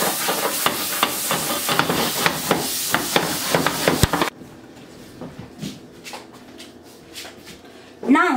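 Butter sizzling and crackling as it melts in a hot stainless steel frying pan. A single sharp knock comes about four seconds in, and the sizzle then drops suddenly to a faint crackle.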